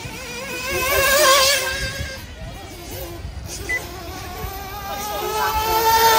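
Radio-controlled off-road buggy's motor whining at high revs, its pitch wavering with the throttle, fading in the middle, then climbing again near the end.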